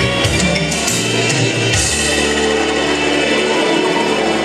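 Live dance-band music from electric guitar and keyboard. The beat stops about two seconds in and a chord is held after it.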